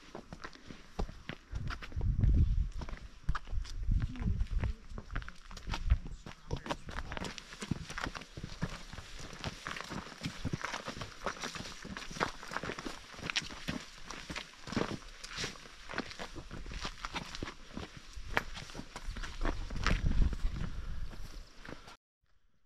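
Footsteps on a dirt and rock hiking trail: many irregular short crunches and scuffs of shoes on soil and stone. A few low rumbles on the microphone come in near the start and again near the end.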